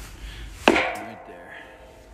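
A single sledgehammer blow on a washing machine's stainless steel basket, about two-thirds of a second in, with a metallic ringing that dies away over about a second. The blow is struck to break out the basket's crimped-on plastic bottom.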